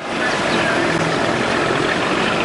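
Buses running, a steady engine and traffic noise.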